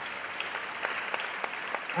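An audience of schoolchildren applauding: a steady patter of many hands clapping.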